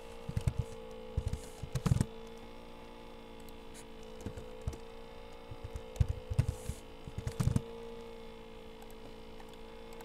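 Computer keyboard keystrokes in two short flurries, one in the first two seconds and another about six seconds in, over a steady electrical hum.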